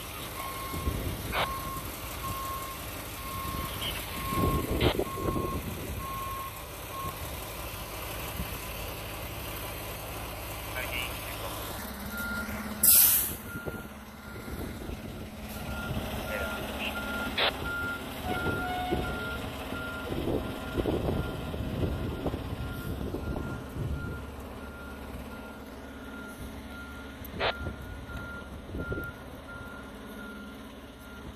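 Emergency vehicles' reversing alarms beeping about twice a second: one beeper for the first several seconds, then a second, higher-pitched one from about twelve seconds in to the end. A short loud hiss comes just before the second beeper starts, over a steady truck engine drone.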